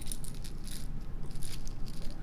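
Loose faceted gemstone beads (lapis lazuli, quartz and amethyst) clicking and rattling against one another in a quick, irregular run of small clicks as they are handled.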